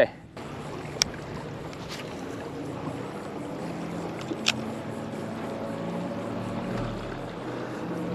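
Wind and water around a small fishing boat on open river water, a steady hiss, with two sharp clicks, one about a second in and one midway, and a faint low hum coming in during the second half.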